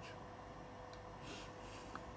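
Quiet room tone: faint hiss with a faint steady hum, and one small click near the end.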